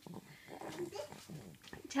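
Faint, brief high-pitched vocal sounds in a young child's voice, one rising in pitch under a second in.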